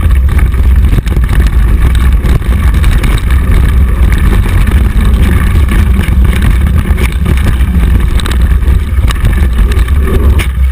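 Mountain bike riding along a rough dirt trail, heard through a handlebar-mounted camera: a loud, steady low wind rumble on the microphone, with short clicks and rattles from the bike over the ground.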